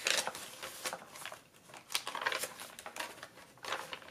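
Paper pages of a thick handmade junk journal being turned by hand: soft, scattered rustling with a few light flicks of paper.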